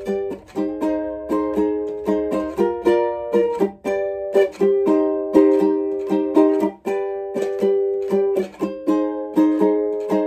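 Cordoba ukulele with a capo on the neck, strummed solo in a steady rhythm of chords, each stroke sharp and the chord ringing on until the next.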